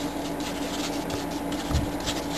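Paintbrush working black paint and water together on a foam plate: a run of soft scratchy strokes over a steady low hum, with a soft bump near the end.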